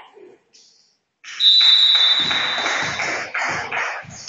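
A referee's whistle blows one long, steady, high blast starting about a second in, over a sudden rise of hall noise, signalling the next serve in a volleyball match. A run of thuds, about three a second, follows in the second half.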